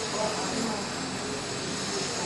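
Steady background hiss of room tone, with faint, distant voices murmuring.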